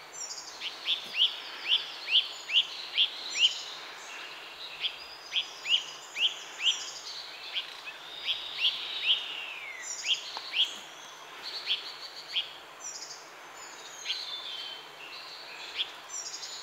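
Small forest birds calling: runs of short, sharp, high notes that drop in pitch, about two a second, with higher twittering song over them and a longer falling note about nine seconds in. These are not the great hornbill's own deep calls.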